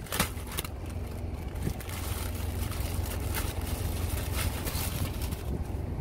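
Steady low rumble of an idling engine, with a few brief rustles and clicks as a new cabin air filter and its plastic bag are handled.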